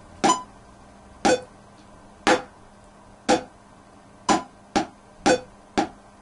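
Metronome clicking at 60 BPM, one click a second, with a stick tapped on a diary in time with it; from about four seconds in, extra taps fall between the clicks as the tapping doubles up to eighth notes.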